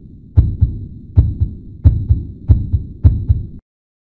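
Heartbeat sound effect: five double low thumps, lub-dub, coming a little faster each time over a low drone, then cutting off suddenly near the end.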